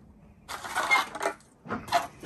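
Die-cast Hot Wheels toy car set down and rolled into place on a hard tabletop. A short metallic clattering rattle of its wheels and body starts about half a second in and lasts just under a second.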